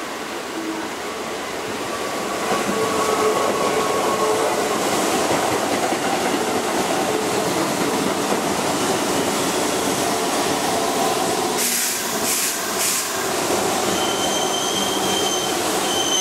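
Keihan 2600 series electric commuter train passing close by on curved track: the rumble of wheels and running gear builds over the first few seconds and holds steady. A few sharp clacks come about twelve seconds in, and a thin high wheel squeal near the end.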